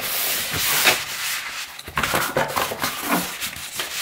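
A hand rubbing and pressing across interlocking foam floor-mat tiles: a continuous scuffing for about the first second, then softer scattered rubs and taps.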